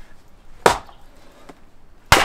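A 1250-gram hand splitting axe comes down once on an upright piece of firewood on a chopping block, a little over half a second in: a single sharp chop of steel into wood that splits the piece.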